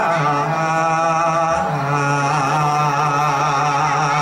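A voice chanting in long, drawn-out notes with a wavering pitch, in the manner of a Javanese gamelan vocal line, with no percussion.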